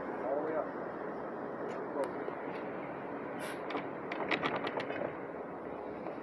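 Steady hum of an idling New Flyer D60LFR articulated diesel bus close by. A few sharp clicks are laid over it, then a quick run of about a dozen clicks around four seconds in.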